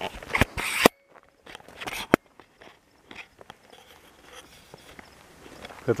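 Footsteps crunching on loose gravel and rock, a few irregular steps that are loudest in the first second, then fainter scuffs and clicks.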